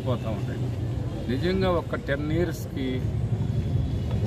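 A man speaking in short bursts over a steady low rumble of a motor vehicle running nearby.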